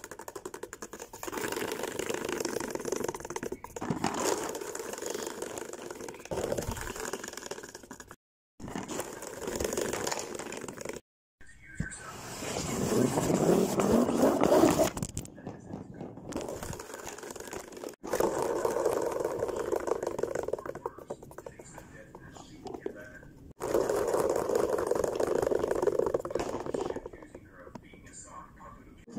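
Plastic salad spinner running, its unbalanced basket whirring and rattling inside the bowl, heard in several short takes cut together. In the loudest take, near the middle, the pitch rises as the basket spins up.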